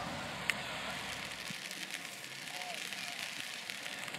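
Outdoor clapping from players and spectators, a dense crackle of many hands with a few faint voices underneath and one sharper clap about half a second in.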